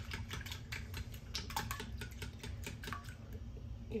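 Whisk clicking and tapping irregularly against a ceramic bowl, several light clicks a second, as eggs and milk are beaten together.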